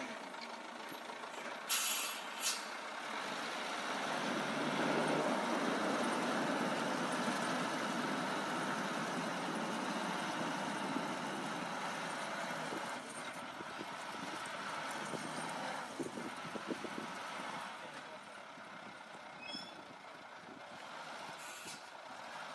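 Snowplow truck working through deep snow: steady engine and scraping noise that grows louder from about four seconds in and eases off in the second half, with two short hisses about two seconds in.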